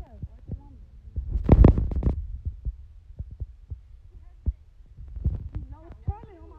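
Scattered dull thumps and knocks, picked up by a phone's microphone during a fistfight, with one louder rushing burst about a second and a half in. Faint voices are heard underneath.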